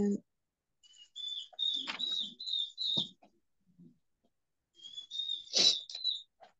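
A bird chirping: runs of short, high chirps about a second in and again near the end.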